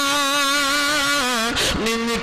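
A man's voice chanting a long, drawn-out held note in a melodic sermon recitation, the pitch wavering slightly. About a second and a half in, the note breaks briefly and a new, slightly lower note begins.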